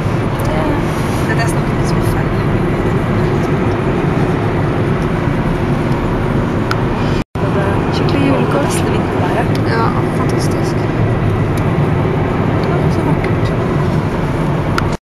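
Steady road and engine noise heard from inside a moving car's cabin, cutting out for an instant about halfway through.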